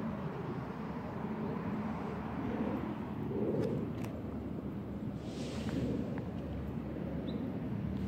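Steady low drone of a plane flying overhead, with a brief hiss about five seconds in.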